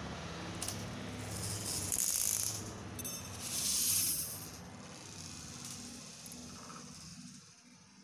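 Small plastic Kinder Joy capsule toy rattling and scraping against a tile floor as it is handled, in two short bursts about two and four seconds in, over a faint steady low hum.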